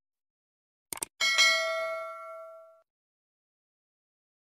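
Animated subscribe-button sound effects: a quick double mouse click about a second in, then a single notification-bell ding that rings and fades out over about a second and a half.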